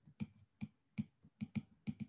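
Stylus tip tapping on a tablet's glass screen while numbers are handwritten: about six short, faint clicks, roughly three a second.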